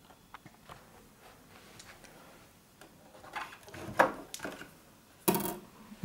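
Plastic battery compartment cover of a Tesla A5 radio-cassette recorder being unclipped and taken off: a run of small clicks, then louder plastic knocks and rattles, the loudest about four seconds in and a short clatter near the end.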